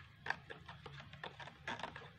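A metal spoon stirring salt into water in a plastic cup, making a quick, irregular run of light clicks as it knocks against the cup.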